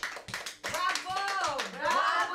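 Quick repeated hand clapping, several claps a second, with a voice from about a second in that glides down in pitch and back up near the end.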